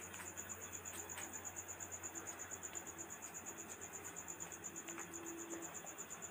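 A cricket chirping steadily, a faint high-pitched trill of fast, evenly spaced pulses.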